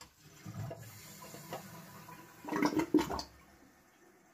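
Toilet flushing, set off by a cat pressing the cistern's push-button. A low rush of water builds to a louder gurgle about two and a half seconds in, then stops suddenly just past three seconds.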